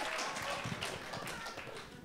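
Scattered audience clapping, a spread of irregular claps that thins out and fades.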